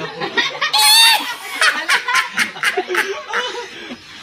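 People laughing together: a shrill, wavering squeal of laughter about a second in, then a quick run of short laughing bursts.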